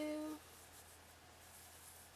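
Faint rubbing of yarn on a crochet hook and fabric as single crochet stitches are worked.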